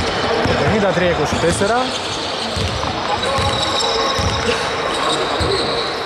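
Basketball bouncing on a hardwood gym floor: a few dull thuds echoing in a large hall, the shooter's dribbles before a free throw.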